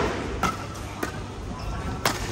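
Badminton rackets striking a shuttlecock in a fast rally: two sharp hits, about half a second apart.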